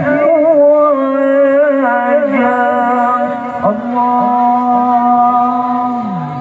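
A male qari chanting Quranic recitation in the melodic tilawah style through a microphone and PA. Ornamented, wavering turns of the voice for the first two seconds or so lead into one long, steady held note.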